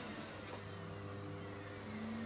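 Hoover Dustmanager bagless cylinder vacuum cleaners running on their minimum power setting: a steady motor hum with a faint high whine that slides in pitch.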